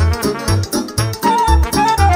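Moldovan folk dance music led by trumpet, over a steady oom-pah accompaniment of bass notes alternating with chords about twice a second. The trumpet holds a high note through the second half.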